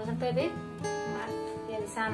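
Instrumental background music with steady held notes, under a few spoken words near the start.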